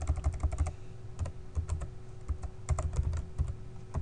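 Computer keyboard being typed on: a quick run of keystrokes at first, then shorter groups of key clicks with brief pauses between, over a faint steady hum.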